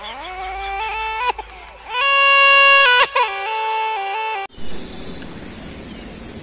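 Dubbed-in comedy sound effect: a high, crying-like melody of long held notes that slides up at the start, then steps up and down in pitch, loudest about two to three seconds in. It cuts off suddenly about four and a half seconds in, leaving only a faint hiss.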